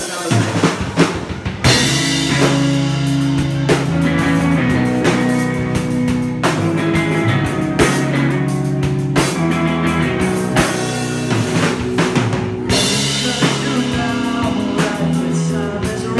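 Live rock band playing an instrumental intro: drum hits open it, then electric bass and electric guitars come in loud with sustained chords about two seconds in, over a steady drum-kit beat.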